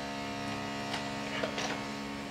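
A power tool from a neighbour's renovation works running with a steady droning hum, carried through the walls of the apartment building.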